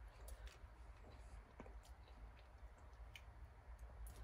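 Near silence: room tone with a low steady hum and a few faint, short clicks.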